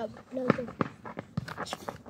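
Running footsteps and a few sharp knocks from a boy dribbling a football along a dirt path, under a young voice calling out briefly near the start.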